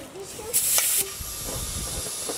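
Compressed air hissing through an air chuck held on the valve stem of a flat car tyre, filling it from an air compressor's hose. A brief loud burst of hiss about half a second in, then a steady, thinner high hiss as the air flows.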